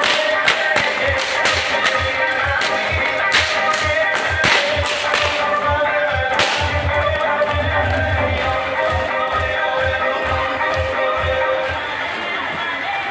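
A circus performer's whip cracking, about ten sharp cracks in quick succession over the first six seconds or so, the last loud one about six and a half seconds in.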